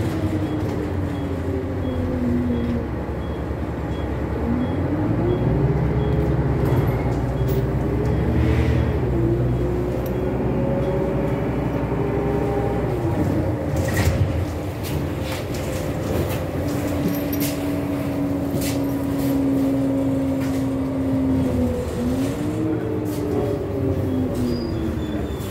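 Renault Citybus 12M diesel city bus heard from inside the saloon while under way: engine and drivetrain rumble with a whine whose pitch rises, holds and drops several times as the bus speeds up and slows. A sharp knock about halfway through.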